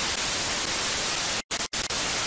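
Television static sound effect: a steady hiss of white noise that cuts out briefly twice about a second and a half in.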